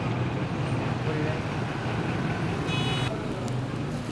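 Steady street traffic noise with a low engine hum, and a short high-pitched tone a little under three seconds in.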